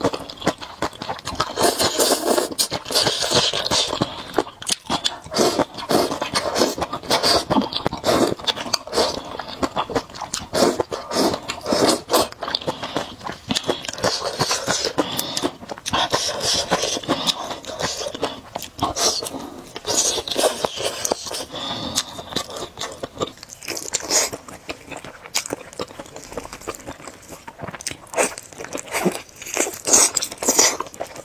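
Close-miked eating: slurping thick noodles in chili sauce and wet, open-mouthed chewing, a dense run of quick smacking clicks.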